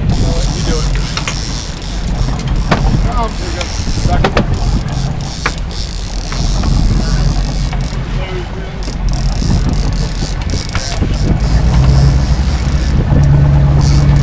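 A sportfishing boat's engines running with a steady low drone that grows louder near the end, under a hiss of wind and rushing water.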